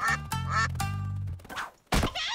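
Cartoon slapstick score: three short pitched notes, some bending in pitch, over a steady bass line, then a sharp hit just before the end.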